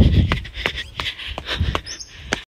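Footsteps of a person running up concrete stairs, short strikes at about two to three a second, with a low rumble on the handheld phone's microphone that is loudest at the start.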